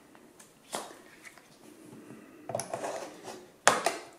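A 21700 lithium-ion cell being pushed into a spring-loaded slot of an XTAR VC8 battery charger: a light click, a second or so of scraping and handling, then two sharp clicks near the end as the cell seats.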